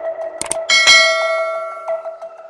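Subscribe-button animation sound effect: two quick mouse clicks about half a second in, then a bright notification bell rings for about a second and stops near the end, over background music.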